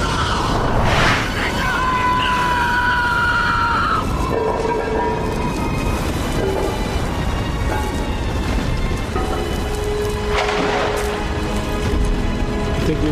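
Dramatic score with held tones over a continuous low rumbling of a cave caving in (a TV sound effect), with a noisy crash about a second in and another near the end.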